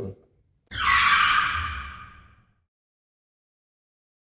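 A short sound effect: a bright rush that starts suddenly and fades away over about two seconds.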